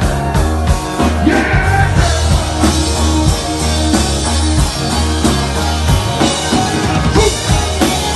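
Live rock band playing: strummed acoustic guitar, electric bass and a drum kit, with a man singing.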